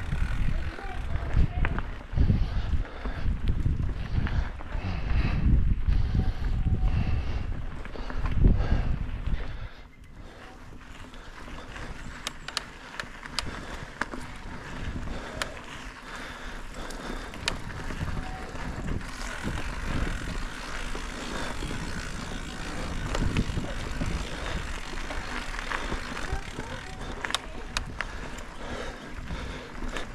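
Mountain bike riding on a dirt singletrack: tyres rolling and low wind rumble on the camera microphone for about the first ten seconds, then quieter rolling with scattered sharp clicks and rattles from the bike.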